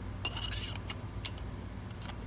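Light metallic clinks and a click from the gimbal's handle and a battery cell being handled, with a short ringing clink about a quarter second in and a sharper click just past the middle, over a steady low rumble.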